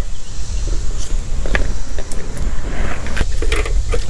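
Scattered metallic clicks and scrapes of pliers working a hose clamp at a small-engine carburetor, over a steady low rumble.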